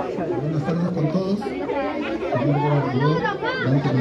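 Only voices: people talking, with a man's voice over the chatter of a gathered crowd.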